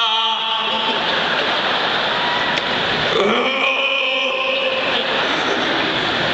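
A large arena audience laughing and applauding, a steady wash of crowd noise, with a few cheering voices rising out of it around the middle.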